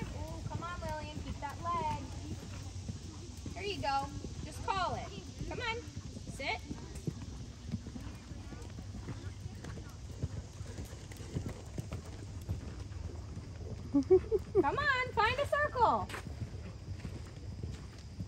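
Horses' hooves on a sand riding arena at a canter, with voices talking in snatches, loudest about fourteen seconds in.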